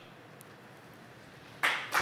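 Quiet room tone, then audience applause starts about a second and a half in.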